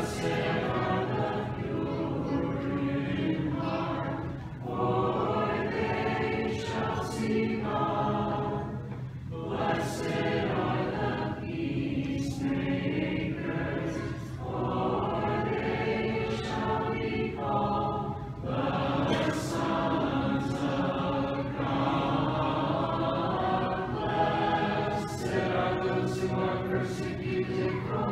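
Church choir singing Orthodox liturgical chant unaccompanied, in sung phrases a few seconds long with brief pauses between them.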